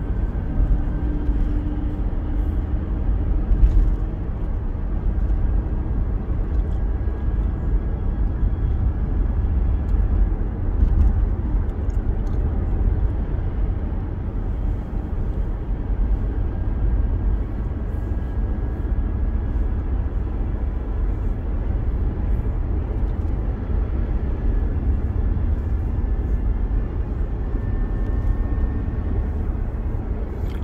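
Steady low rumble of a car driving along a city street, heard from inside the cabin: engine and tyre noise at a constant cruising pace.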